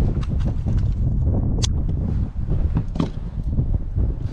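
Irregular knocks and clatters as a freshly landed fish thrashes and is grabbed in the boat, over a heavy low rumble on the microphone.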